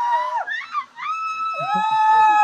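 Long, high-pitched drawn-out screams of thrill from people riding a giant swing. One cry ends about half a second in, a new one starts about a second in, and a second voice joins it, each sliding up at the start and holding steady.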